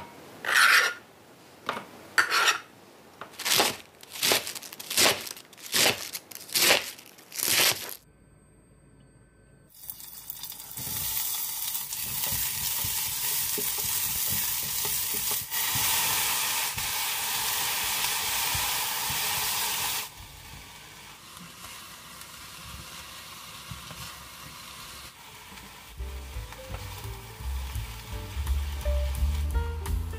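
A chef's knife chops vegetables on a plastic cutting board in sharp, regular strokes for about eight seconds. After a short gap, cabbage and tomato sizzle loudly as they are stir-fried in a stainless steel pot, then sizzle more quietly. Background music comes in near the end.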